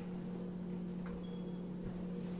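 A steady low hum in a quiet room, with no distinct event.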